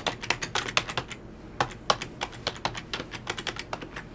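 Typing on a computer keyboard: irregular key clicks, a quick run in the first second and then sparser, as a login is entered.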